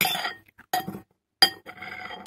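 Metal knife and fork scraping and clinking against a plate. There are three sharp clinks, each ringing briefly, about two-thirds of a second apart.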